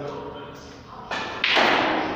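A loud thud about one and a half seconds in, preceded by a smaller knock, among voices in a large hall.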